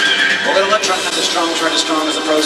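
Live rock band playing, with a man singing into a microphone over electric bass and a drum kit.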